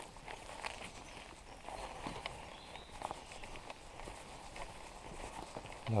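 Soft footsteps on a wet paved street, irregular steps of someone walking.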